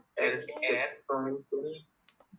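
Speech: a voice speaking three short phrases.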